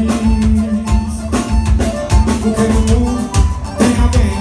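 Live band music without vocals: a drum kit keeping a steady beat under bass and acoustic guitar.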